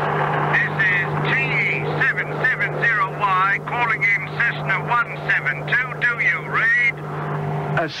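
A small plane's cockpit radio crackling with warbling squeals and garbled, unintelligible voice as a transmission comes in, over the steady low drone of the light plane's engine.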